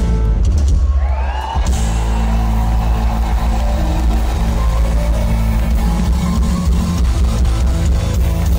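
Live band music played loud through a PA, with bass guitar, drum kit and keyboards, heard from within the audience. About a second in there is a brief dip and a rising sweep before the full band comes back in. Audience members clap along.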